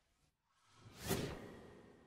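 A single whoosh sound effect of an animated logo sting. It swells up about half a second in, peaks sharply just after a second, then fades away.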